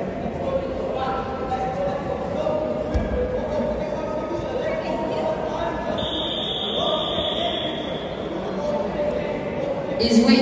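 Indistinct voices echoing in a large sports hall, with a dull thump about three seconds in. A steady high tone sounds for about two seconds past the middle.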